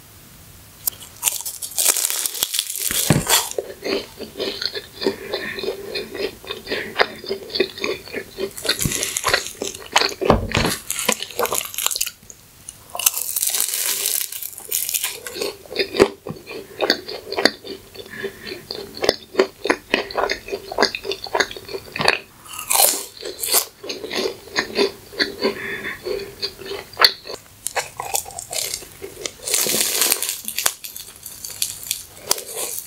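Biting into and chewing the crisp fried crust of a McDonald's sweet potato and caramel pie: a continuous crackly crunching, with a louder, sharper bite every few seconds.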